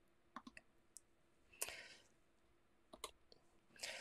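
Near silence broken by a few faint, scattered clicks, with one slightly louder click and a short rustle about one and a half seconds in.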